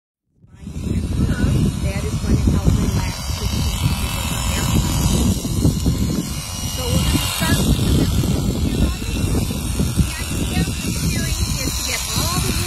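Electric sheep-shearing clippers running steadily as a fleece is shorn, partly covered by heavy, gusty wind noise on the microphone.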